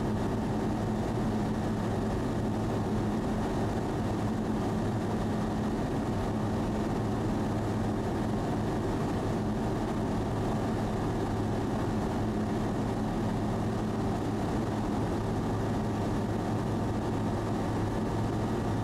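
Sling light aircraft's piston engine and propeller running steadily under power, a constant drone heard from inside the cockpit.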